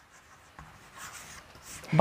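Chalk writing on a chalkboard: a few faint, short scratching strokes as a word is written.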